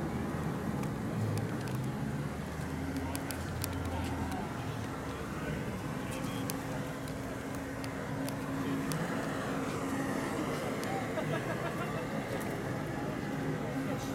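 Street ambience: indistinct voices of people talking in the background over a steady low engine hum from a vehicle, with a few light clicks.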